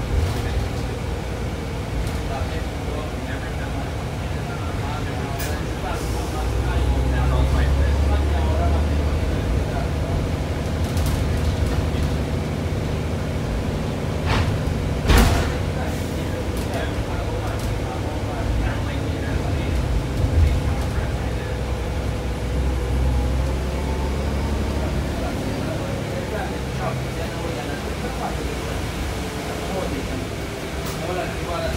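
Interior of a 2000 Neoplan AN440A high-floor bus underway: the Cummins ISM diesel and Allison transmission give a low, steady drone that swells twice under acceleration. A single sharp knock comes about halfway through.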